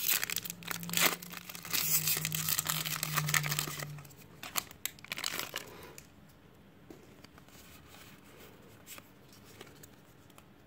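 Foil Pokémon booster pack wrapper crinkling and tearing as it is ripped open by hand, dense and crackly for about four seconds. Then it goes much quieter, with only a few faint clicks as the cards are handled.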